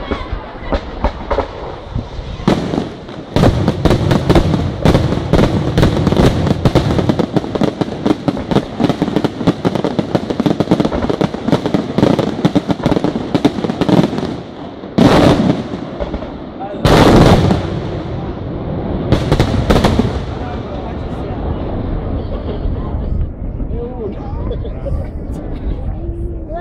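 Aerial fireworks display: a long run of dense, rapid crackling from about two seconds in, then three loud shell bursts in the second half, fading to a low rumble near the end.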